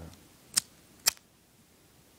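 Two sharp metallic clicks about half a second apart from a small push-up pocket lighter being worked open and struck to light.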